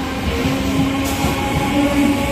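Electric multiple-unit local train running past the platform: a steady rumble of wheels on rails with a steady hum held over it.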